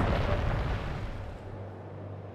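Animated sound effect of a volcanic eruption: a low, noisy rumble that fades steadily away, with a faint steady low hum beneath it.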